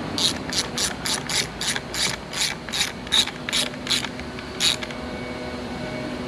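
Hand ratchet wrench tightening the positive battery terminal clamp nut: about a dozen quick ratcheting clicks, roughly three a second, that stop about a second before the end.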